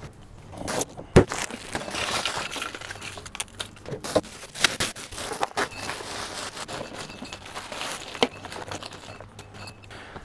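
Bagged ice cubes poured from plastic grocery-store ice bags into a soft cooler packed with beer cans: a continuous rattle and crunch of tumbling cubes with the plastic bag crinkling. There is a sharp knock about a second in.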